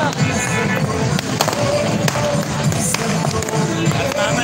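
Loud street-rally din: music playing over a crowd, with many sharp firecracker pops throughout.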